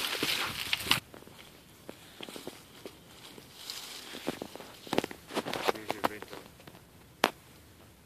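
Footsteps on dry leaves, pine needles and twigs: a scatter of soft crackles and snaps, with one sharp snap about seven seconds in. A louder noisy rush fills the first second.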